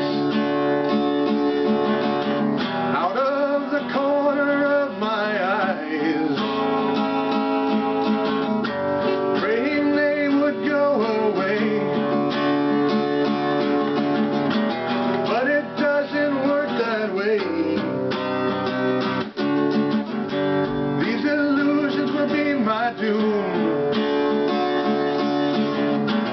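Acoustic guitar strummed in a steady song accompaniment, with a man's singing voice coming and going over it.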